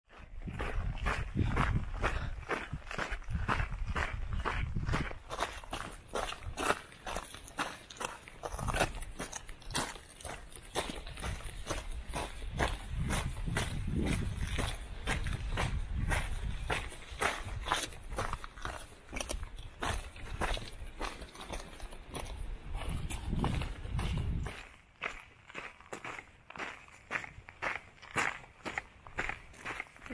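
A hiker's footsteps on a rocky mountain trail at a steady walking pace, about two steps a second. A low rumble comes and goes under the steps and stops near the end.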